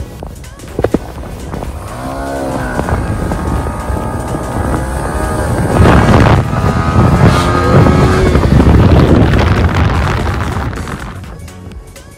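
KTM RC 200 and Yamaha R15 sport motorcycles accelerating hard in a drag race. The engine pitch sweeps upward several times about two seconds in, then the engines run loudest in the middle and fade away near the end.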